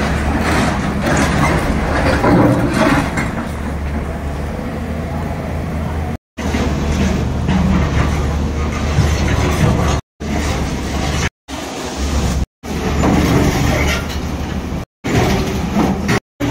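Heavy machinery engine running steadily with a low hum, with voices in the background; the sound cuts out abruptly several times in the second half.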